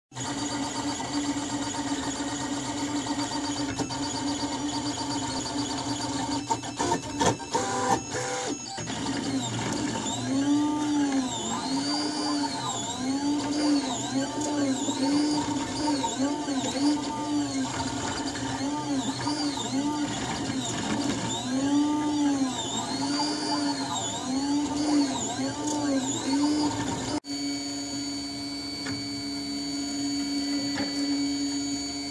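Printrbot Simple Metal 3D printer printing: its stepper motors whine in repeated arcs of rising and falling pitch, about one a second, as the print head moves back and forth, over a steady hum. A few clicks come before the arcs begin, and near the end the whine gives way abruptly to the steady hum alone.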